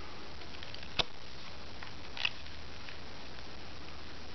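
Small neodymium magnet balls clicking as sections of a magnet-ball sculpture are worked apart with a card and snapped together: one sharp click about a second in and a fainter one a little past two seconds, over a steady background hiss.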